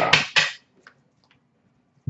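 A man's voice trailing off, then near silence with a few faint taps of trading cards being set down on a glass display counter.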